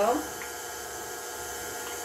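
Stand mixer running steadily, beating cake batter, with two faint light clicks from a utensil stirring in a small bowl.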